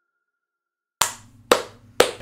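Silence for about a second, then two sharp hand claps about half a second apart.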